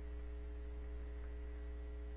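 Steady electrical mains hum: a low buzz with a row of evenly spaced higher overtones.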